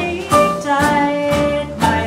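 Small swing band playing live, with an archtop guitar strumming chords on the beat, about two strokes a second, under long held melody notes.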